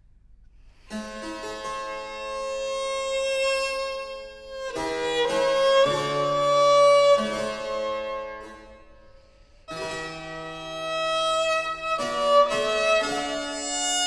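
Baroque violin and harpsichord playing early instrumental music, starting about a second in: long bowed violin notes over plucked harpsichord chords. The music fades almost away about two-thirds of the way through, then starts again.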